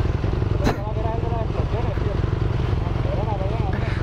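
Motorcycle engine idling steadily, with faint voices in the background.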